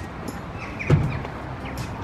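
Outdoor street background noise, with a single short knock about a second in.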